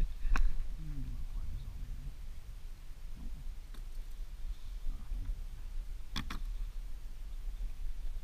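Handling noise as a caught walleye and fishing gear are handled in a kayak: two sharp clicks, about half a second in and again about six seconds in, over a steady low rumble on the camera's microphone.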